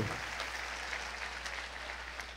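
Faint applause from a congregation, an even patter that dies down slightly toward the end.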